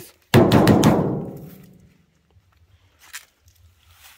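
A loud, hollow bang on the sheet-metal body of a rusted old parts car, ringing and dying away over about a second and a half.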